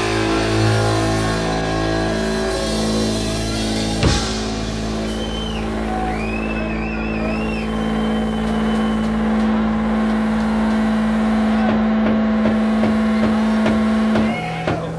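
Live noise-punk band holding a sustained amplified drone: a steady low guitar-and-bass note rings on. Wavering high feedback tones come in about the middle, and there is a single sharp crash about four seconds in.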